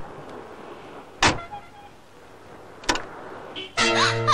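Car doors shutting: three sharp thumps about a second and a half apart, the middle one the loudest. Music with a low drone and a wavering melody comes in just before the end.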